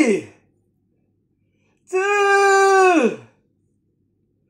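A long wordless vocal 'aaah', held at one pitch and then sliding down at the end: the falling tail of one call at the start, then a complete call about two seconds in.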